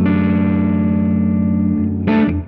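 Electric guitar, a Panucci 59 Les Paul-style, played through a Greer Soma 63 amp-in-a-box overdrive pedal with light breakup. A chord is struck at the start and left ringing for nearly two seconds, then muted just before a new strum at the end.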